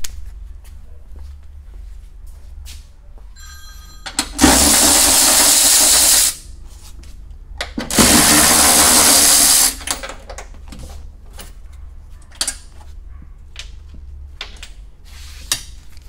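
Cordless power tool on a long extension bar, run in two bursts of about two seconds each, a second and a half apart, driving out the 12 mm bolts that hold a Toyota hybrid battery pack in place. Light clicks and handling noise come between the bursts.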